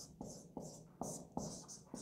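Felt-tip marker writing on a whiteboard: a run of short, faint strokes, about five in two seconds, as figures are written out.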